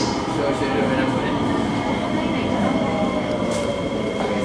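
SMRT C751B metro train heard from inside the car as it runs into the station: a steady rumble and hiss of the running train with a faint steady whine.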